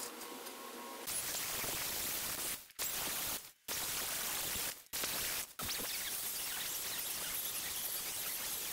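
Angle grinder working along rusty steel rectangular tubing, cleaning the surface down to bare metal: a steady rushing grind that starts about a second in and is broken by a few abrupt cuts.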